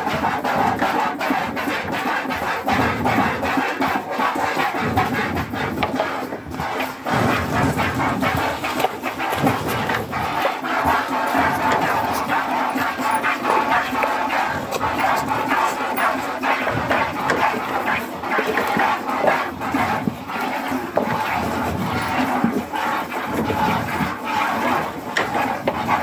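Milk squirting into a plastic bucket as a Jersey cow is hand-milked: a steady run of hissing squirts over a continuous background noise.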